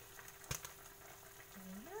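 Vegetables simmering in liquid in a wok, a faint even bubbling hiss, with one sharp click about half a second in.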